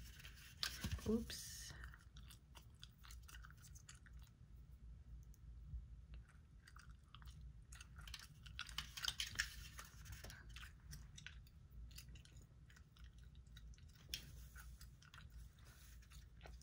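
Gum chewing: soft, irregular wet clicks and smacks of the mouth, with a denser run about halfway through.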